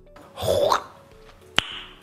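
A man's short, drawn-out vocal sound made through pursed lips, then a single sharp tongue click about a second and a half in, over faint background music.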